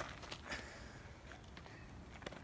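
Faint footsteps and scuffs on a leaf-strewn dirt path, with a soft scuff about half a second in.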